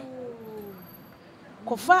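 A woman's voice trailing off in a long, faint tone that slowly falls in pitch, then a short spoken syllable near the end.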